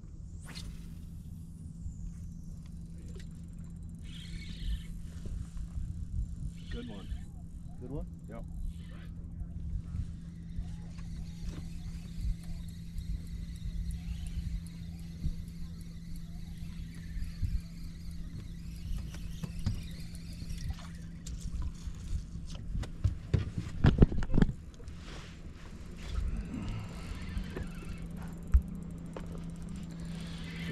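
Steady low hum of a fishing boat's motor, holding one pitch, under the rumble of the open-water boat, with scattered clicks and knocks of rod and reel handling and a short cluster of louder knocks about three quarters of the way through.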